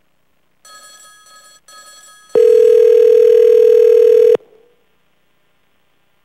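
Telephone line tones from an outgoing call being placed: a faint pitched tone in two short pieces, then a loud steady tone for about two seconds that cuts off suddenly.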